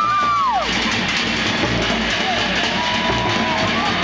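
Show music with a steady drum beat accompanying a fire knife dance, with a long held cry that rises and falls at the start.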